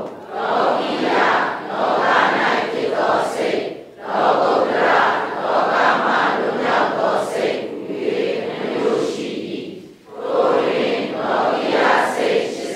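Many voices reciting a text together in unison, in phrases of a few seconds with short pauses about four and ten seconds in.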